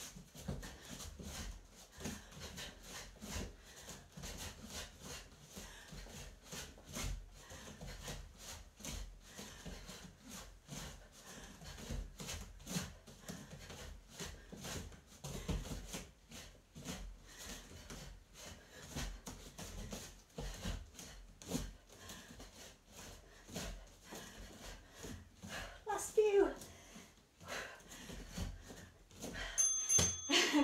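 Shadowboxing punch combinations (jab, cross, hook, uppercut) thrown barefoot on foam floor mats: a quick, uneven run of soft foot thuds and pivots with sharp breaths on the punches. A short voiced sound comes near the end.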